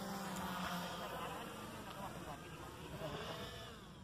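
Buzz of small electric motors and propellers on radio-controlled aircraft flying overhead, a steady hum that weakens and fades toward the end.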